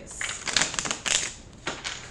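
A deck of tarot cards being shuffled by hand: a quick rattling run of card snaps for about a second and a half, then two single snaps near the end.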